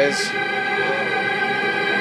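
Clue video slot machine playing its electronic bonus music, a chord of steady held tones, with a short bright shimmer just after the start as the machine adds its wilds.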